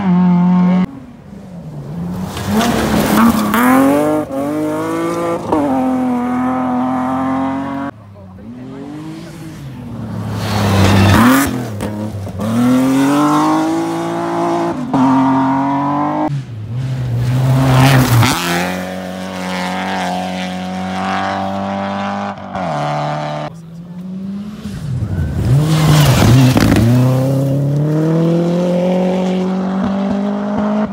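Rally car engines at full throttle on a gravel stage. The pitch climbs through each gear and drops at every shift, again and again as the cars approach.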